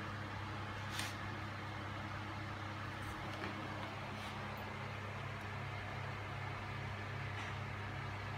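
A steady low hum with a light background hiss. Two faint clicks come from handling, one about a second in and one around four seconds in.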